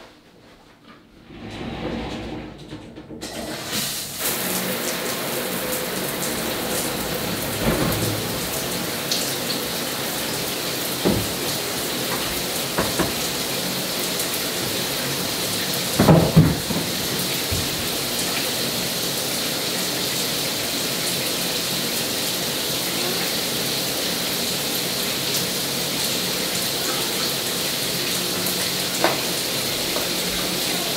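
Shower turned on about three seconds in, then running steadily with a constant hiss of spray. About halfway through there is a short knock.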